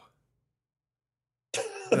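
Dead silence for about a second and a half, then a short cough just before a man starts talking.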